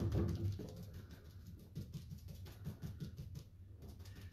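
Faint, quick, even run of paintbrush strokes as chalk paint is brushed onto a wooden furniture piece.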